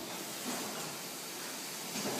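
Steady, even hiss-like running noise of a metal-stamping transfer line for drawn motor casings, with no distinct strokes or tones.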